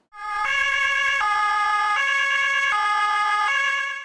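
Electronic two-tone siren of a Ford Kuga fire-brigade command car, sounding the German alternating 'tatü-tata' signal. It comes on about half a second in and steps back and forth between a higher and a lower tone, each held just under a second.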